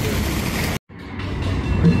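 Fountain jets splashing into a pool, broken off suddenly by a moment of dead silence, then street traffic fading in with a low rumble of passing cars.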